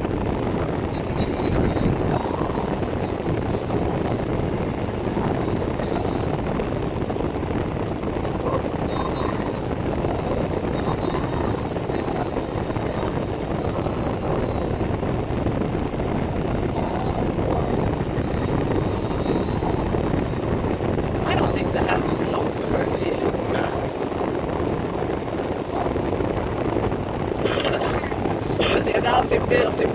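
Steady low road and engine noise of a car driving slowly through town, heard inside the cabin.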